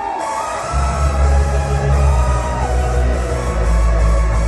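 Loud electronic dance music over a club sound system, with a held melody line and a heavy bass coming in less than a second in.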